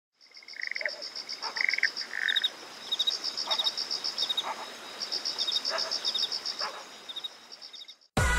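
Animal chorus of insects and frogs: a high, rapidly pulsing trill that stops and starts, with lower chirps and short croak-like calls scattered between. It fades in at the start and fades out near the end.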